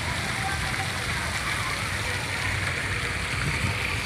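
Steady rushing of a man-made waterfall, with faint voices in the background.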